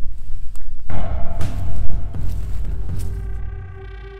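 Dark horror film score: heavy low rumbling with a few sharp hits in the first half, then a held, eerie tone with overtones coming in about three seconds in as the music fades down.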